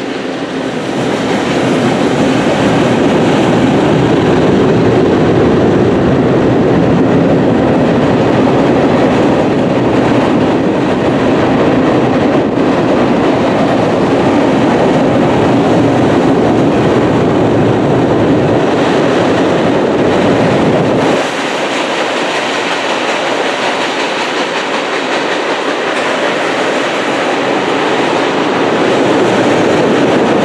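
Freight cars (tank cars, then covered hoppers) rolling across a steel deck girder railroad bridge: steady loud noise of wheels and cars on the span. About two-thirds of the way through it suddenly drops in level and loses its deep low end.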